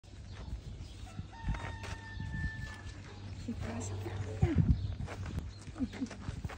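A rooster crows once in the background, a single long held call starting about a second in. A few louder, short low sounds come near the middle.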